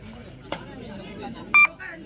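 A short, steady electronic beep about one and a half seconds in, over voices and chatter from the crowd around the court.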